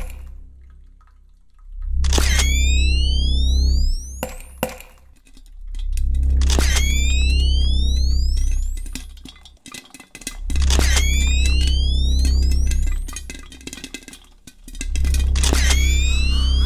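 Dark, ominous intro music: deep bass swells come back four times, about every four and a half seconds. Each opens with a sharp hit and a high sweeping sound rising in pitch, with scattered crackles in between.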